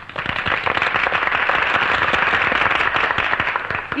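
A group of women applauding on an old film soundtrack: dense, even clapping that starts abruptly after the speaker's last line.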